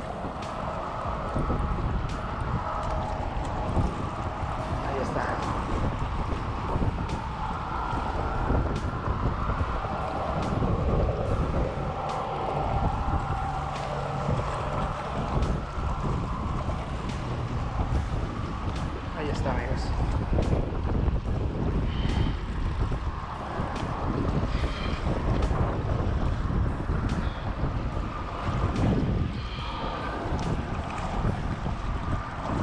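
Wind buffeting the microphone while a Penn spinning reel is cranked under load, reeling in a hooked stingray.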